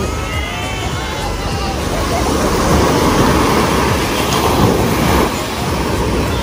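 Ocean surf washing onto the beach, with wind buffeting the microphone.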